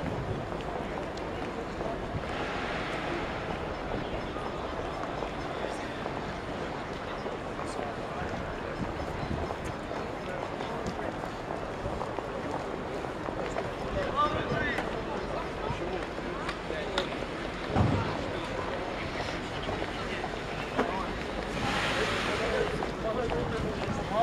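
Outdoor street ambience: a steady wash of city traffic noise and wind on the microphone, with snatches of passers-by talking now and then and a single dull thump a little past the middle.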